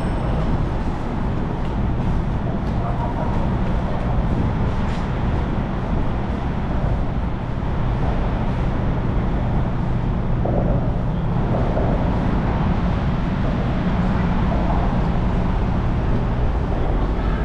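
Steady city road traffic under an elevated highway: a continuous low rumble of cars and buses with no sharp events.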